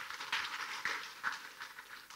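Audience applause: a short round of hand clapping that thins out toward the end.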